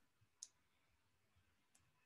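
Near silence: room tone, with two faint short clicks, one about half a second in and one near the end.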